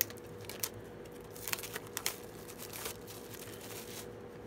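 Packaging on a makeup palette being torn open and handled: a string of crinkles and sharp crackles, busiest about halfway through.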